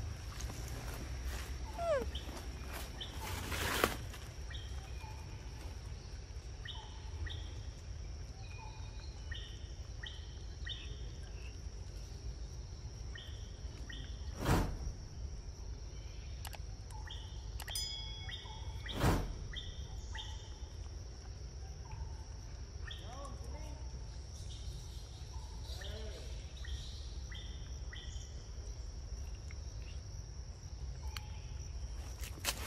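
Forest ambience: a steady high-pitched insect drone with short, repeated bird chirps over a low rumble. Three sharp clicks or knocks stand out as the loudest sounds, spread through the scene.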